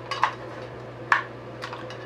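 Two sharp clacks of hard plastic parts knocking together, about a second apart, as a water speaker's housing and clear plastic tube are handled and fitted together, over a steady low hum.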